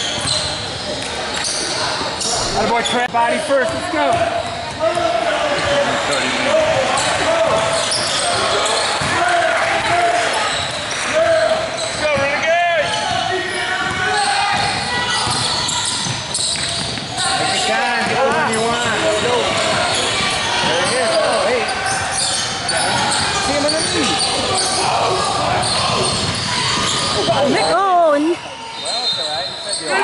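Basketball game sound in a large echoing gym: a basketball bouncing on the hardwood court amid voices from players and spectators, with no break in the noise.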